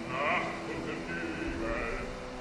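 Opera singing with orchestra: a singer's voice with strong vibrato enters near the start and again near the end, over steady held orchestral notes.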